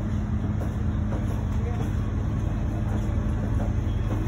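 A steady low mechanical hum and rumble with a constant drone, with faint voices in the background.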